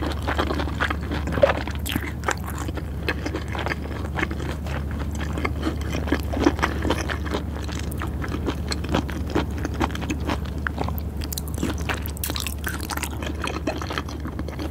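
Close-miked wet chewing of raw fish and sushi rice, with many small irregular mouth clicks and smacks.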